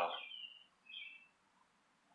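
A single faint, short bird chirp about a second in, then near silence.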